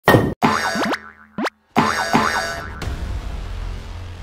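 Short comic intro sting made of cartoon sound effects: a few loud bursts with sliding pitch, bending down and back up, each cut off abruptly with brief gaps between them, then a fading tail.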